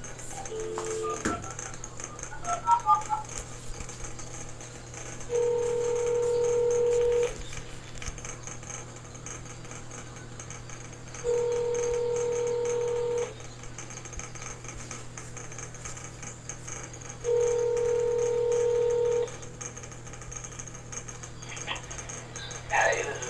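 Smartphone placing a call on speaker: a few short keypad beeps, then the ringback tone rings three times, each about two seconds long with about four seconds between, while the call goes unanswered.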